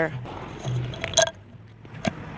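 A woman's voice trailing off at the start, then a short low murmur and a brief sound a little after a second in, over quiet outdoor background.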